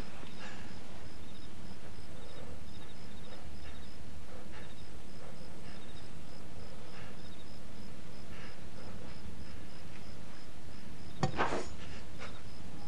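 Night ambience of crickets chirping in a steady, evenly repeating pattern over a low hiss. Near the end, a sudden sharp knock.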